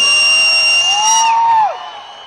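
A loud, shrill whistle blown into a handheld microphone: one steady held note that cuts off a little over a second in, with the crowd whooping under it.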